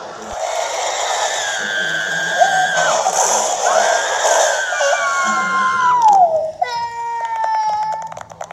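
High-pitched cartoon character voices screaming and crying in long held cries, one sliding down in pitch about six seconds in, followed by a buzzy steady tone near the end. The sound plays from a screen's speaker and is picked up by a phone.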